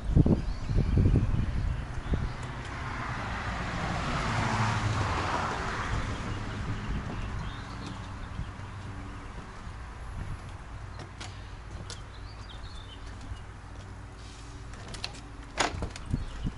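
Wind rumbling on an action camera's built-in microphone, with a rush of noise that swells and fades over a few seconds, then a quieter steady background with a few light knocks near the end.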